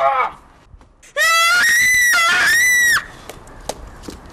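A short falling vocal cry, then about a second in a loud, high-pitched human scream lasting nearly two seconds, with a brief break in the middle.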